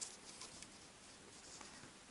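Near silence with a few faint clicks and light handling sounds as fingers press a metal heart charm into soft silicone mould putty; the sharpest click comes right at the start.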